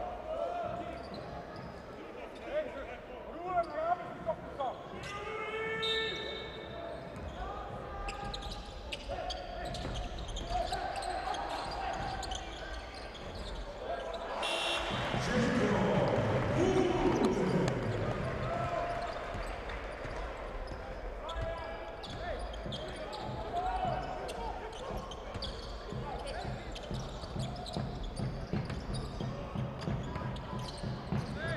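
Basketball arena ambience: indistinct voices over steady crowd noise, with a ball bouncing on the court. A louder swell of noise comes about halfway through.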